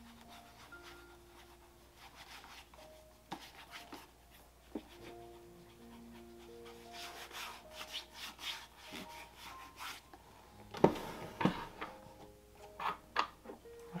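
Fingertips rubbing cream polish into a leather dress shoe, a faint soft scuffing, under quiet background music of slow sustained notes. A few louder knocks near the end as the shoe is handled and set down.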